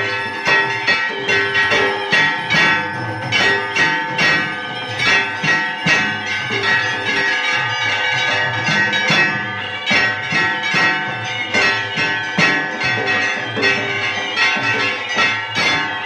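A large barrel drum beaten with two sticks in a quick, steady rhythm, over the continuous ringing of temple bells, as in an aarti.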